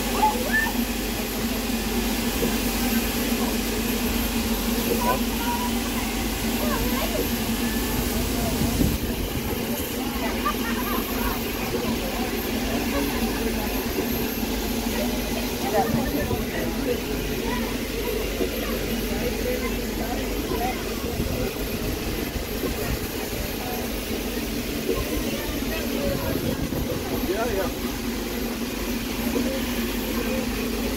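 LNER A4 Pacific steam locomotive 60007 standing at a platform with a steady hiss of steam and a low hum, a little less hiss from about nine seconds in. People's voices chatter close by throughout.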